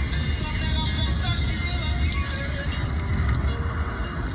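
Music playing over the low, steady rumble of a car driving at speed, heard from inside the cabin.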